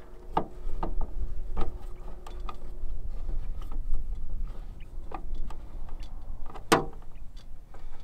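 Screwdriver tightening the mounting screw of a small metal backup-camera bracket on a van's rear hatch trim: scattered light clicks and taps, with one sharper click near the end, over a low steady background rumble.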